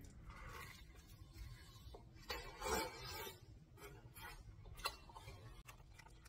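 Faint chewing of a bite of ultra-thin, crispy pizza crust, with a few soft crunches in the middle and a short click near the end.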